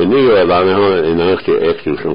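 A man speaking, heard as a radio broadcast recording.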